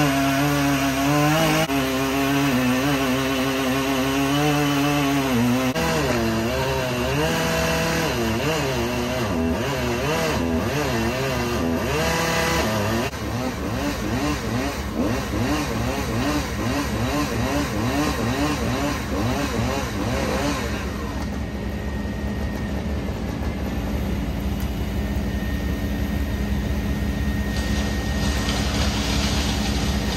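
Husqvarna 3120XP two-stroke chainsaw running hard as it cuts through a thick trunk, its pitch wavering under load. About twenty seconds in, the saw fades out and leaves a steady low engine drone.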